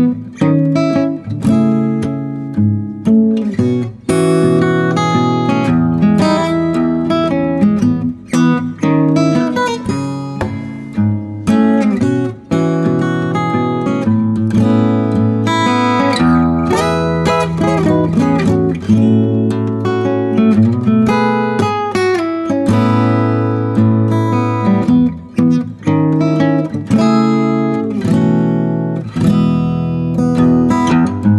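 Steel-string acoustic guitar played with hybrid picking, pick and fingers together, in a continuous run of quick plucked notes and chords.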